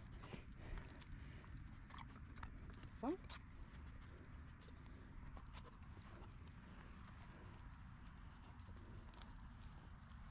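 Faint, scattered clicks of a Labrador retriever's claws and steps on a concrete path, mostly in the first few seconds, over a steady low rumble.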